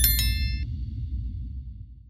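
Subscribe-button sound effect: two quick clicks and a bright bell-like 'ding' chime that rings for about half a second. Underneath, the deep bass of the background music fades out toward the end.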